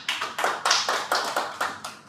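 A small group of people clapping, a quick run of claps that fades away near the end.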